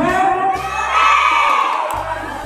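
A group of children's voices in unison, one long drawn-out call that rises and holds for nearly two seconds.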